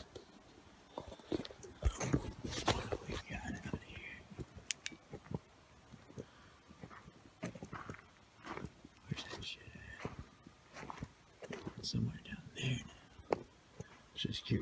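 A man whispering in short bursts, with scattered clicks and knocks from the phone being handled.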